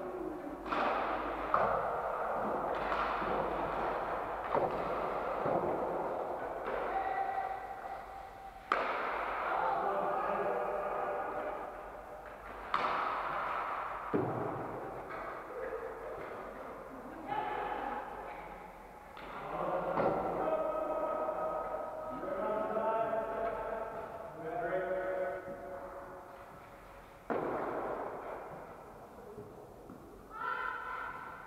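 Sharp knocks of inline hockey pucks being struck and hitting hard surfaces, about ten of them at irregular intervals, each ringing on in a long echo around a large sports hall. Players' distant voices call out in between.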